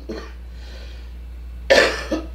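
A woman coughs once near the end: a single short, harsh cough.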